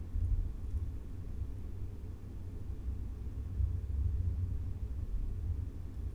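A steady low rumble of background noise, with no speech and no distinct events.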